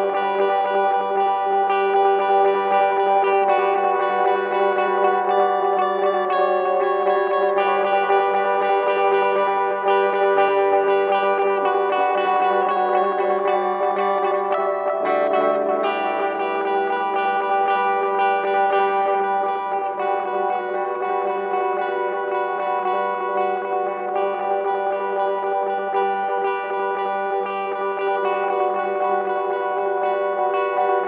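Guitar played through effects with echo: layered, sustained notes ring over one another in a steady drone-like texture. About halfway through the lower notes shift and the harmony changes.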